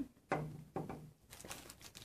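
Plastic zip-top bag and paper sugar packet crinkling as they are handled, in a run of quick crackles in the second half. About a third of a second in there is a brief low hum, the loudest sound.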